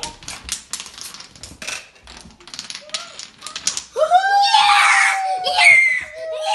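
A chain of wooden domino blocks toppling one into the next: a rapid run of light wooden clicks for about four seconds. Then a child lets out a long, loud scream of delight, the loudest sound.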